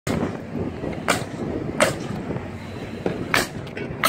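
Three sharp, irregularly spaced bangs of nails being driven into plywood roof decking, over the steady noise of passing street traffic.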